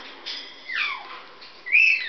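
A parrot whistling two notes: a falling whistle a little before the middle, then a louder, higher note near the end that holds briefly and then drops.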